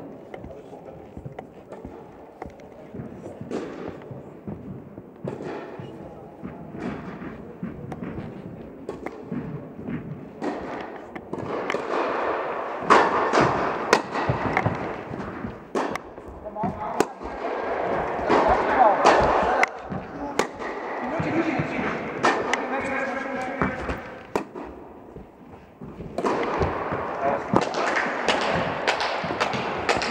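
Tennis rackets striking the ball and the ball bouncing on an indoor court during rallies: a string of sharp single hits at irregular intervals, with people talking in the background through the second half.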